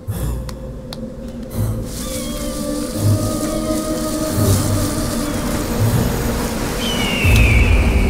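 Dramatic film score with soft low beats about every second and held tones, over a storm sound effect of rushing wind and rain that builds, loudest near the end.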